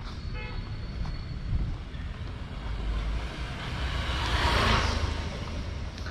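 A road vehicle passing on the street, its sound swelling to a peak about four and a half seconds in and then fading, over a low traffic rumble. There is a short horn toot near the start.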